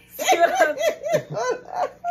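Women laughing hard: a quick run of high ha-ha pulses with a brief break near the middle.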